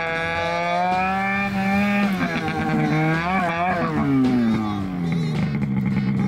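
A snowmobile engine running at varying revs. Its pitch wavers, falls off about four seconds in, then holds steady.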